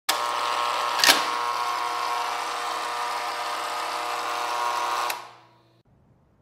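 A steady electric, machine-like buzz that starts abruptly, with a sharp click about a second in and a softer one near five seconds, then dies away over the last second.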